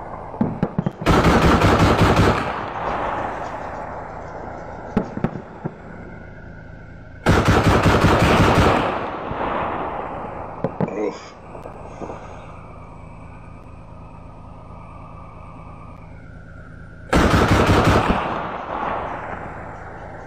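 A BTR-4 armoured personnel carrier's turret-mounted 30 mm autocannon firing three long bursts of rapid fire, a few seconds apart, with a couple of single shots or distant impacts between them. The vehicle's engine runs steadily under the firing.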